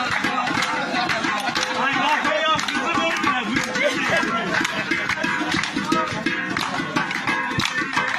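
Lively dance rhythm of many handclaps and drumming on metal cooking pots, with men's voices singing and shouting over it.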